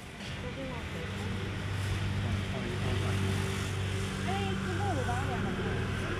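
A motor scooter's engine idling close by, a steady hum that comes in about a second in, with indistinct voices around it.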